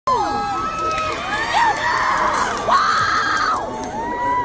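A concert audience screaming and cheering: many high voices held in long, overlapping screams, some rising and falling in pitch.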